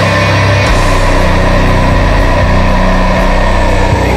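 Metalcore music: heavily distorted guitars and bass hold low, droning notes, with no steady drum beat.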